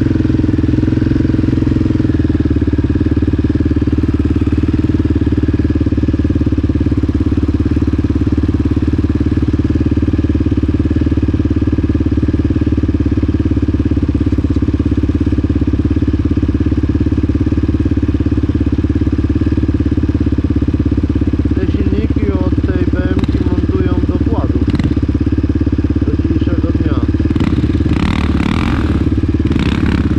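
Yamaha Raptor 700 quad's single-cylinder four-stroke engine idling steadily while the quad stands still. Brief indistinct voices come in about two-thirds of the way through.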